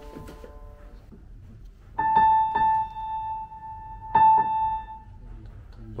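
Yamaha NU1 hybrid piano, its sampled acoustic-piano tone played through its built-in speakers: one high note struck about two seconds in, held, then struck again about two seconds later and left to fade.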